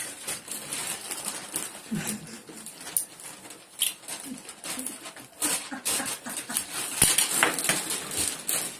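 Wrapping paper crinkling and rustling in irregular handfuls, with sticky tape being pulled and handled. It gets denser and louder about seven seconds in.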